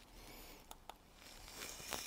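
Faint background noise with two small ticks around the middle.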